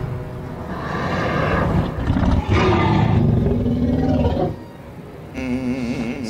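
A Tyrannosaurus rex roar from a film soundtrack: one long, deep roar of about four and a half seconds that dies down to a low rumble. A man's voice comes in near the end.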